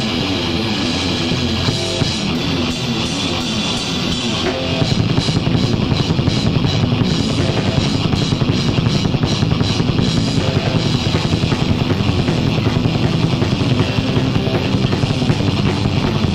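Thrash metal band playing on a rehearsal recording: guitar and drum kit. About four and a half seconds in, the drumming and riffing drive into a faster, denser rhythm.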